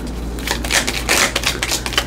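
A deck of tarot cards being shuffled in the hands, the cards flicking against each other in a quick, uneven run of clicks that thins out briefly about the first half second.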